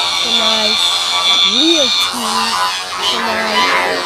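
Edited, looped audio: a pitched voice-like or musical phrase repeats, its note rising and falling about every three seconds, with short held notes between. A steady high whine sits over it and cuts off about halfway through.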